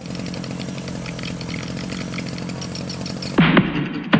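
A small engine running steadily at an even speed. About half a second before the end, music starts with a loud, deep hit.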